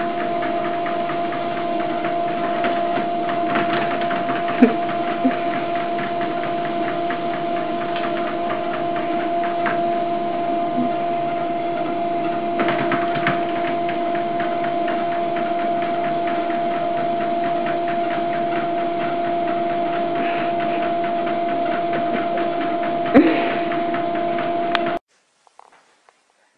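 Electric treadmill running: a steady motor whine over the belt's hum, with a few sharp knocks on the deck. It cuts off suddenly about a second before the end.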